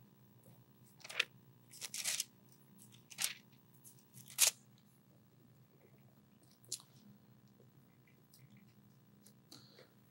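Bible pages being turned: a handful of short paper rustles, the loudest about four and a half seconds in, a last faint one near seven seconds, over a faint steady room hum.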